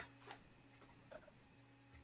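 Near silence: a pause on a web-conference call, with two faint brief ticks, one early and one about a second in.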